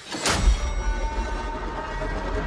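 Trailer sound design: a sudden rushing hit about a quarter second in that swells into a loud, steady deep rumble with high held tones over it.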